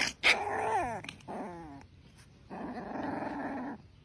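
A small puppy growling and yapping at a poking hand: two sharp yaps at the start, a couple of falling whiny yelps about a second in, then another stretch of growling.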